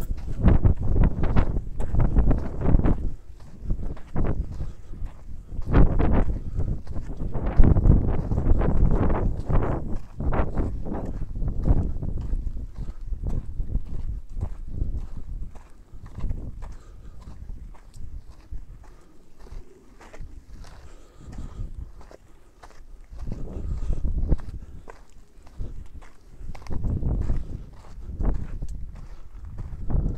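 A hiker's footsteps on a dirt trail, a steady run of dull steps, louder over the first half, softer through the middle and louder again near the end.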